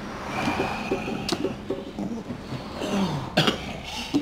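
A man coughing and clearing his throat as he catches his breath after being roughly held down, with two sharper coughs about a second in and again near the end.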